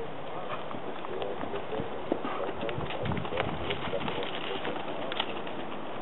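Hoofbeats of a racking horse moving under saddle on sandy arena footing, heard as irregular soft clicks and thuds.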